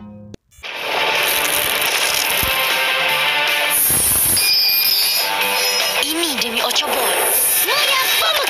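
Cartoon soundtrack: music with action sound effects and brief shouted voices, cutting in abruptly after a moment of silence about half a second in.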